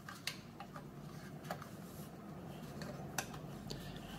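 A few faint, sharp plastic clicks as the retaining ring is pressed into the Triumph Thruxton R's Monza gas cap housing, its tabs clicking into place in the lock. The clearest click comes about three seconds in.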